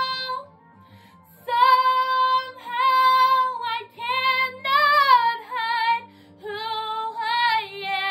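A woman singing over a quiet instrumental backing track. A held note ends about half a second in, and after a short pause she sings several phrases with vibrato.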